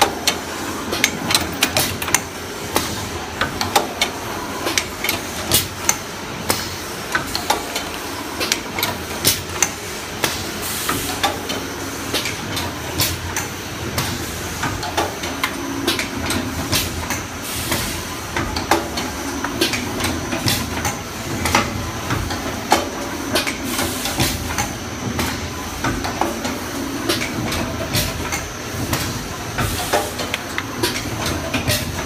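Paper baking-cup forming machine running, a continuous mechanical clatter with repeated sharp knocks from its forming mechanism over a steady hiss.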